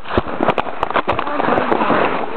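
A sled sliding down a snowy hill: a dense, crackling scrape of snow under the sled, broken by many sharp clicks and knocks.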